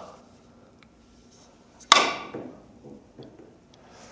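A carom billiard cue striking the cue ball firmly: one sharp click about two seconds in, followed by a few faint knocks as the ball rebounds off the cushions.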